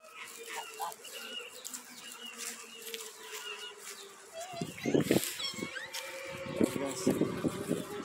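Domestic geese calling in short bursts, about halfway through and again a little later.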